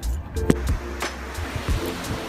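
Background music, with a single sharp knock about half a second in.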